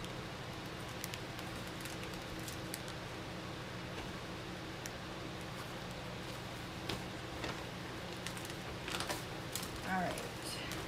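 Scattered light clicks and knocks of household items being shifted and handled by hand, over a steady low hum; the handling grows busier near the end.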